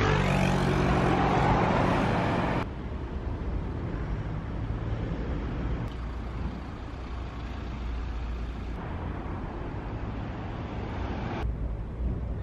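City street ambience with road traffic: a louder vehicle engine hum for the first two and a half seconds, then a quieter, steady traffic background that shifts abruptly a couple more times.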